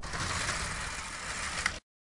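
Sound effect of a stage curtain being drawn open: a steady swish of sliding fabric with a small click near the end, then it cuts off suddenly.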